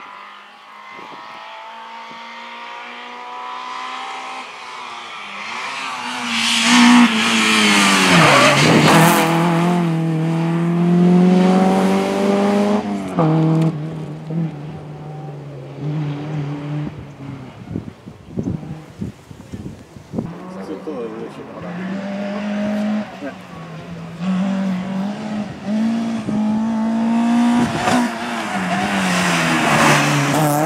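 Opel Astra GSi rally car engine at high revs, getting louder as the car approaches and passes. The pitch drops and climbs in steps as the driver lifts off, brakes and changes gear through the bends, with some tyre noise.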